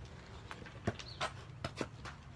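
A few short, irregular knocks and clicks over a low steady hum.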